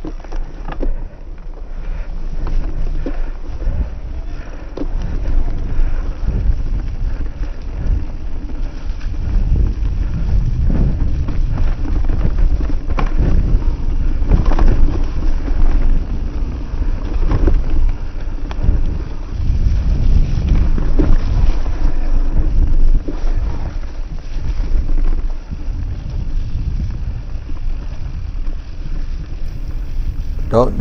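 An electric mountain bike riding down a leaf-covered dirt trail, heard from a camera on the bike: a heavy low rumble of wind buffeting the microphone and tyres rolling over dirt and leaves, with frequent knocks and rattles from the bike over bumps and roots.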